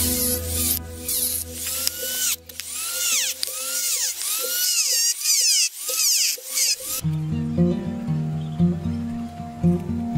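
A handheld rotary tool with a cutting wheel cutting into a thin wooden board. Its high whine dips and recovers about every half second as it bites into the wood, over background music. The tool stops about seven seconds in, leaving only the music.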